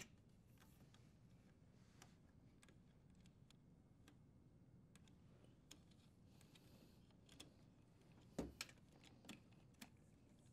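Near silence with faint, scattered small clicks and ticks of plastic wire nuts and electrical wires being handled and twisted together, a little cluster of louder clicks about eight and a half seconds in.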